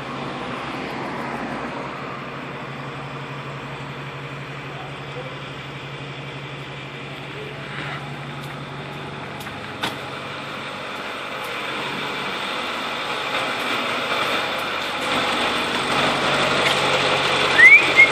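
Ford F-550's 6.4-litre Power Stroke V8 diesel running steadily during a diesel-system cleaning treatment, growing louder over the last several seconds. A single sharp click about ten seconds in.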